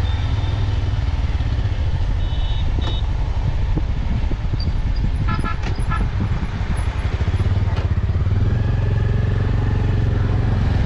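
Motorcycle running steadily while riding, heard from a camera mounted on the bike, with a heavy low rumble. A couple of brief high tones sound about two and a half and five and a half seconds in.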